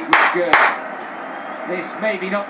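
A man clapping his hands, two sharp claps about half a second apart in the first second.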